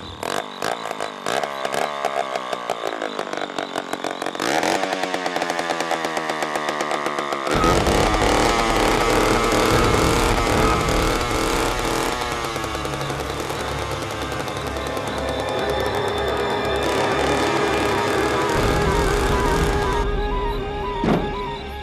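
Chainsaw engine running, getting louder and fuller about a third of the way in, mixed with film-score music.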